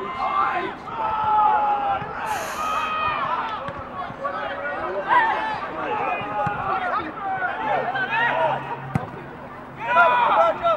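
Several voices shouting and calling out over one another during a football match, with a single sharp knock near the end.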